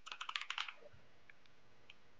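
Computer keyboard typing: a quick run of light keystrokes in the first second as a word is typed, then near silence with a faint tick or two.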